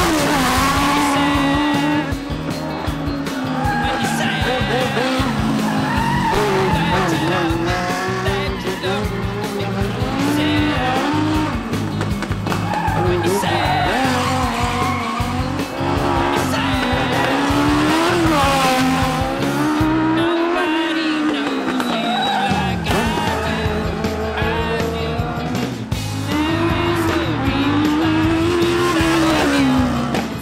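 Legend race car's motorcycle engine being driven hard, its revs climbing and dropping repeatedly through the laps, over background music.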